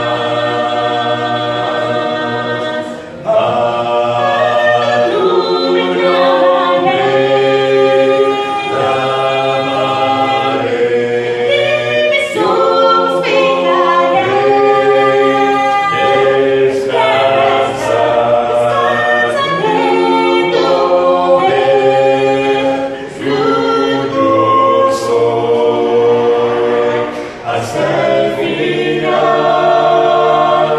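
A small group of voices singing a cappella in harmony, a congregational hymn with no instruments, the phrases broken by short pauses about three seconds in and twice near the end.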